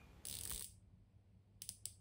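Faint ratchet clicks of a Davosa Ternos diver's 120-click ceramic bezel being turned by the fingers: a brief soft rubbing sound, then a few quick clicks close together near the end.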